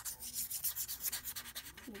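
White acrylic paint marker rubbed over a small piece of paper to colour it in, a quick run of short back-and-forth strokes.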